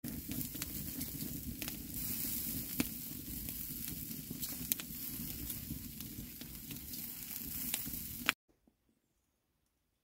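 Bacon and sausages sizzling on a wire grill over an open wood fire, with scattered sharp pops. The sound cuts off suddenly about eight seconds in.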